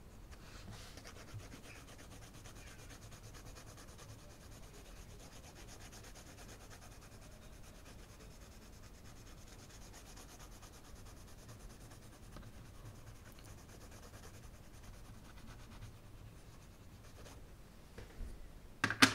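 Arteza coloured pencil shading on a colouring-book page: quick back-and-forth strokes make a faint, steady, scratchy rubbing of pencil lead on paper, stopping about a second before the end.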